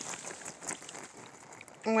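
Water poured from a gallon jug splashing onto a plastic tarp rain catcher, a steady wash of noise with small ticks.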